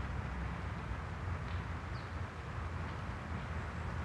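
Outdoor ambience: a steady low rumble, with a few faint, short, high chirps about one and a half and two seconds in.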